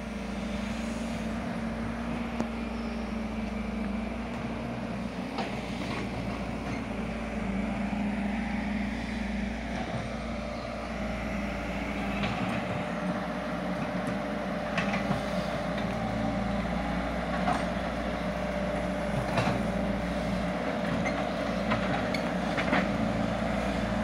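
Excavator's diesel engine running steadily, with a handful of brief knocks over it.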